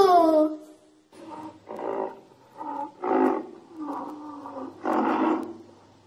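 A rhinoceros bellowing: a run of short calls, about seven in five seconds, starting about a second in.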